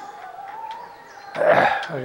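A man's brief harsh cough about one and a half seconds in, over a faint wavering whine in the recording.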